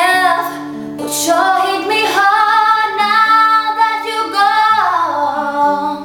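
A woman singing with her own acoustic guitar accompaniment, holding one long note through the middle that slides down near the end.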